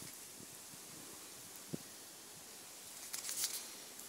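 Faint rustling of dry grass and leaf litter, with a few soft clicks about three seconds in, as an Alcatel 1C phone is dropped face-down onto the ground and picked up.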